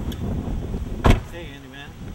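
Someone climbing into a car's back seat with clothing rustling, then a car door shutting with one loud thud about halfway through, followed by a brief voice.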